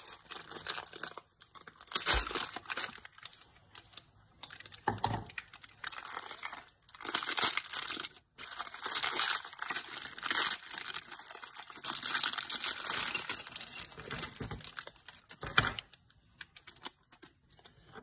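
A cardboard box and a clear plastic packaging bag being handled and opened by hand, in irregular bursts with short pauses.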